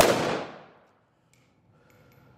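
A single rifle shot, loud and sudden, its echo in the indoor range dying away within about half a second.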